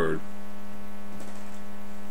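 Steady electrical hum: one constant low tone with a buzzy stack of overtones above it, unchanging throughout.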